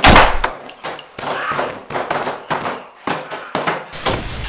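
A heavy thump right at the start, followed by a string of irregular knocks and bangs with short gaps between them.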